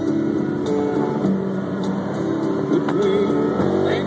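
A country song playing on a car stereo, heard inside a moving car with steady road and engine noise underneath.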